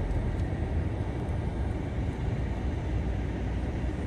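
Low, steady rumble of a vehicle heard from inside its cabin.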